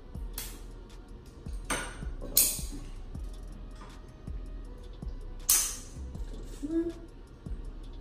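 Light metallic clicks and a few short, sharp scraping bursts as a hand tool works at a bicycle's rear disc brake caliper to free the brake pads, over faint background music.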